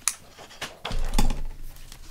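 Taps and knocks of craft tools being picked up and set down on a cutting mat. The loudest handling comes about a second in.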